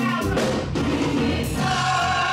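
Church choir singing a gospel song in held notes, moving to a new chord about one and a half seconds in.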